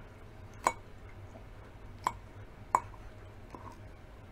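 Metal fork clinking against a ceramic salad bowl: three sharp, ringing clinks, one under a second in and two close together near the end of the second and third seconds.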